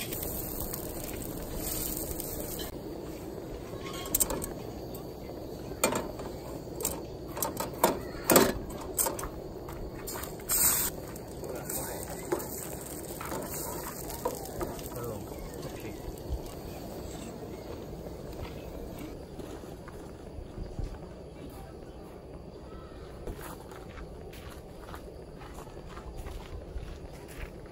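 Food frying in a small pan on a portable gas camp stove, a steady sizzle under a run of sharp clicks and knocks from about four to sixteen seconds in, as eggs are cracked into the pan and stirred with a wooden spatula.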